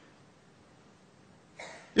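Near silence, then about a second and a half in a short, breathy sound from a man close to a microphone, the throat-and-breath noise taken just before speaking.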